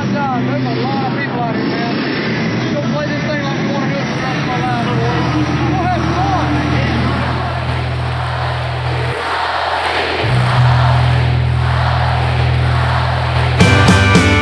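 Voices of a small group talking and calling out over a steady low droning tone. The drone drops out briefly about nine seconds in and comes back louder, and near the end a live country band comes in with guitar.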